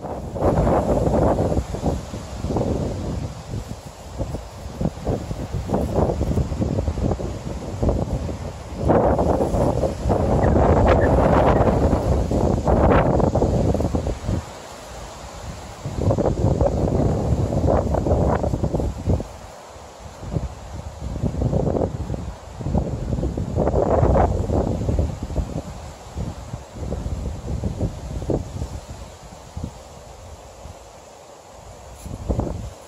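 Wind buffeting the microphone in uneven gusts that swell and die back, a loud, low-heavy rushing with no steady pitch.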